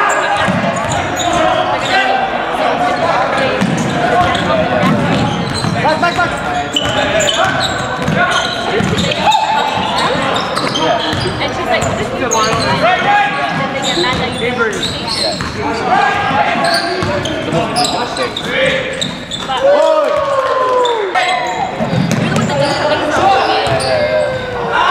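Basketball dribbled on a gym's hardwood floor during a game, with players' and spectators' voices echoing through the hall.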